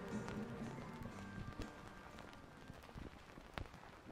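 The last notes of a rock track fading out on a vinyl record, leaving the record's surface crackle and scattered pops in the quiet gap between tracks; one louder pop comes near the end.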